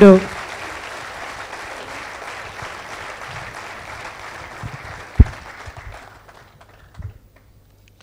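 Large audience applauding, the clapping thinning and fading out over the last couple of seconds. A single low thump sounds about five seconds in.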